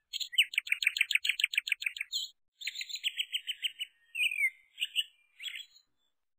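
Songbird chirping: a fast trill of about ten notes a second lasting some two seconds, a second shorter trill, then a few separate chirps including one that slides downward.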